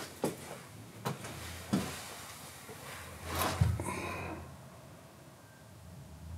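A few light knocks and rubbing as a polyurethane foam surfboard blank is balanced upright on a digital scale, with one louder scrape and low thump a little past halfway.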